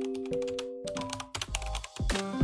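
A rapid run of keyboard-typing clicks, a typing sound effect, over soft sustained piano-like music; the clicks and music fade out about a second and a half in.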